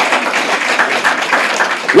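Audience applauding, with some laughter mixed in.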